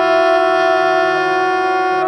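Free-improvised music from a small ensemble of wind instruments and voice: several long notes held together, each steady in pitch.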